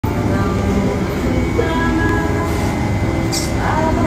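Busy café background noise: a loud, steady low rumble with indistinct voices of other customers talking.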